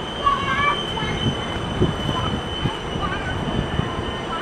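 Boeing 767-300ER coming in to land, heard from a distance: a steady thin high whine over an uneven low rumble.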